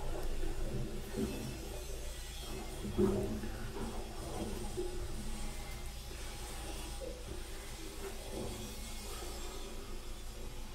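A steady low hum, with a brief louder sound about three seconds in and a few fainter ones.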